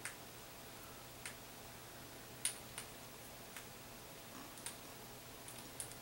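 Scattered faint clicks, about ten of them, the loudest about two and a half seconds in: a beading needle and glass beads ticking against each other as the needle is woven through the beadwork.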